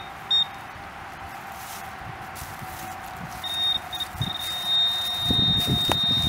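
Metal-detecting pinpointer beeping: two short beeps at the start, then about halfway through a few short beeps that run into one long steady tone as it closes in on a buried metal target, here a shotgun shell. Rustling of leaves and soil is heard under the tone near the end.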